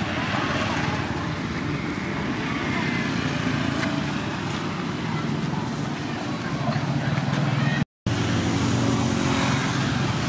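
Steady outdoor background noise with a low rumble. It drops out completely for a moment a little before the eighth second.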